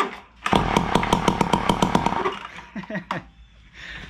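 Ryobi SS30 string trimmer's two-stroke engine, run with no muffler, pull-started and firing in a rapid string of sharp pops, about ten a second, for under two seconds, then sputtering out about three seconds in. The engine, just freed from a seized piston, fires, so it still has compression.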